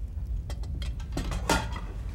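A few short knocks and scrapes of people moving at a wooden table, the loudest about one and a half seconds in, over a steady low hum.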